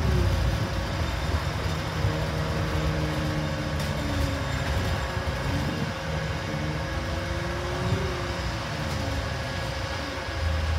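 Double-decker bus running along the road, heard from its upper deck: a steady low engine drone with road noise, and an engine note that rises and falls a few times as it pulls and changes gear.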